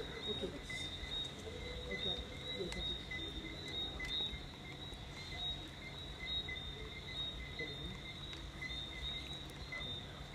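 Night chorus of small calling animals, crickets or tree frogs, giving rows of short, regular high chirps at two steady pitches. Underneath runs a low steady rumble, with a few faint voices near the start.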